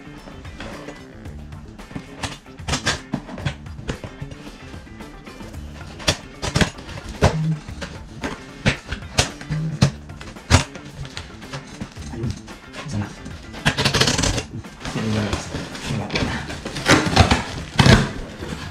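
Kitchen knife cutting through packing tape and cardboard: scattered sharp clicks and scrapes, then longer scraping rustles about fourteen seconds in and again near the end as the box flaps are pulled open. Quiet background music plays underneath.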